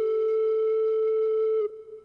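A flute holding one long, steady note, which stops near the end and fades away.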